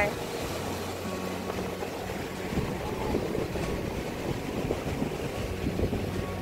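Sea waves washing onto a sandy, rocky beach with wind on the microphone, and a steady low hum running underneath from about half a second in.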